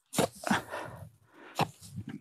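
A wooden pole jabbed down into dry adobe soil in a metal wheelbarrow, giving three knocks about a second and a half apart in total, with scraping between them.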